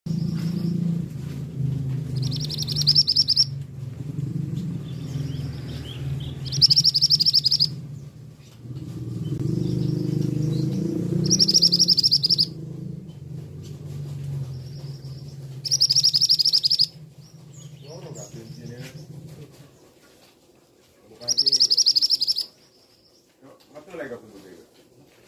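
Male scarlet minivet calling: five loud bursts of rapid high-pitched notes, each about a second long, repeated every four to five seconds. A steady low hum runs underneath until near the end.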